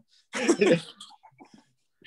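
A man's short burst of laughter, loudest about half a second in and trailing off in a few fainter breaths by about a second and a half.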